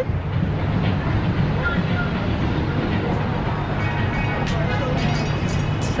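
Steady outdoor city ambience: a continuous low rumble of traffic and background crowd noise, with faint distant voices.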